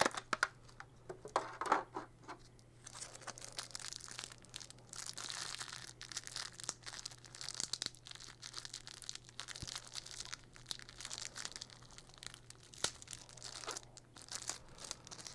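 Plastic packaging crinkling and tearing as it is pulled open by hand, a run of irregular crackles and sharp clicks with a few longer stretches of crinkling.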